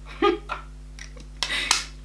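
A woman's short laugh, followed by a hissy burst of noise with a sharp click in it, about one and a half seconds in.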